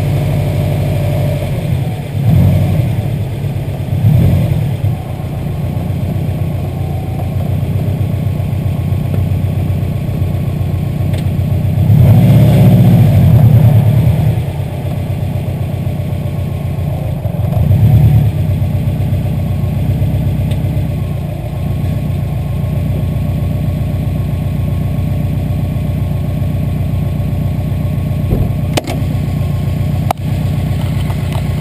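Subaru WRX's turbocharged flat-four engine running at low speed, with short surges of throttle about two, four and eighteen seconds in and a longer one from about twelve to fourteen seconds in.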